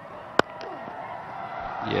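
Cricket bat striking the ball, a single sharp crack about half a second in. Stadium crowd noise follows and swells as the shot runs away.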